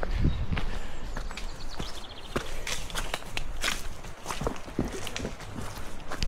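A trail runner's footsteps going downhill on a wet, muddy trail: a quick, irregular run of footfalls and scuffs on soft ground and stones.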